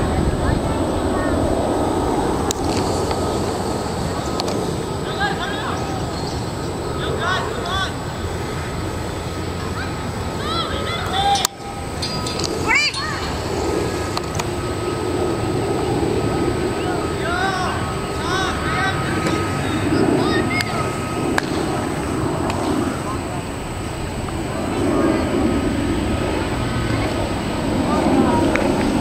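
Steady roar of a twin-engine jet airliner flying past at altitude, swelling and easing slowly, with a brief dropout about eleven seconds in. Short faint chirps sit over it.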